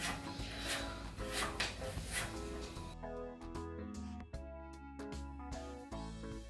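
Chef's knife slicing a carrot into thin strips on a wooden cutting board, several crisp chops in the first three seconds, over background music that carries on alone after that.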